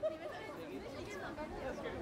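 Indistinct chatter of several people talking at once in a small street crowd.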